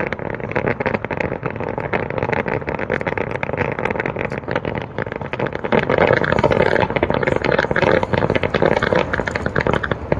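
Fireworks display: a dense barrage of aerial shells bursting into crackling stars, a continuous rapid crackle of many small reports. It grows louder about six seconds in.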